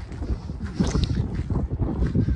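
Wind buffeting the microphone, a gusty low rumble, with a few louder irregular knocks and crunches.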